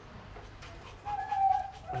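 A husky giving a short high whine about a second in, after a few faint knocks as the dog steps out of its travel crate.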